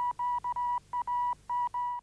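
Electronic beep tone: a single steady mid-pitched tone switched on and off as seven beeps of unequal length in three groups, cutting off suddenly at the end.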